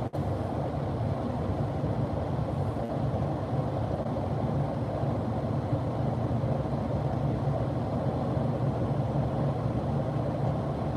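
Steady road and tyre noise heard inside a car cruising at motorway speed, with a brief dropout at the very start.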